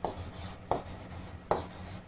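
Chalk writing on a blackboard: a low scratching as the letters are drawn, with three sharp taps as the chalk strikes the board.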